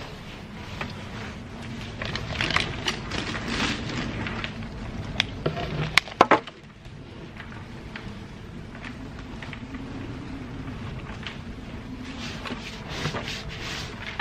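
Loose compost being tipped into a plastic plug tray and brushed level across the cells by hand, a gritty rustling and scraping. A few sharp clicks sound about five to six seconds in.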